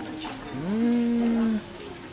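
A single drawn-out hummed 'mmm' that rises, then holds one steady note for about a second before stopping.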